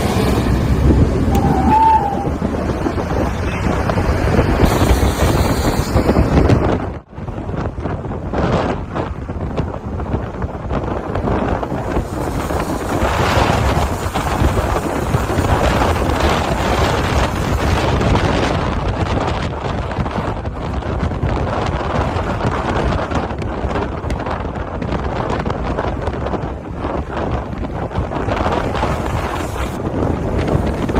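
Wind buffeting the microphone of a camera filming from a moving car, over steady road and traffic noise. A short high tone sounds about two seconds in, and the sound drops out briefly about seven seconds in.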